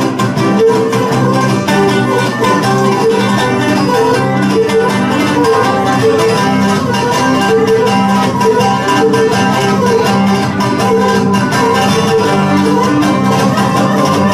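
Live Cretan music: a bowed Cretan lyra playing a quick melody over steadily strummed laouto (lute) accompaniment, at a constant loud level.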